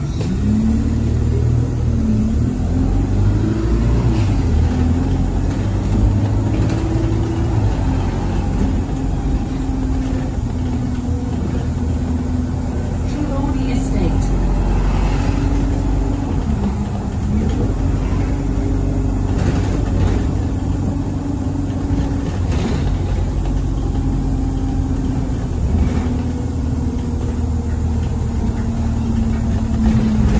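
Diesel engine of a single-deck bus heard from inside the passenger saloon as it drives along, its pitch rising and dropping back in steps several times as it speeds up and changes gear. A few brief knocks or rattles are heard along the way.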